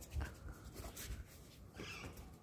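A puppy playing with a plastic ball on a concrete floor, making faint, scattered scuffs and taps as its paws scrabble and the ball is knocked along.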